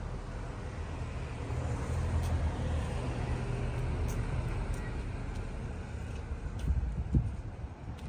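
Road traffic rumbling, with a vehicle passing that swells and fades over the middle few seconds.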